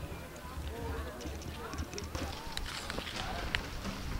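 Metal spoon clicking and scraping against a plastic bowl as eggs are whisked with chopped vegetables, with a run of sharp clicks in the second half.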